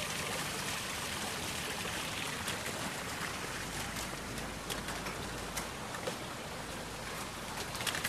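Steady hiss of light rain falling, with a few scattered sharp ticks in the middle.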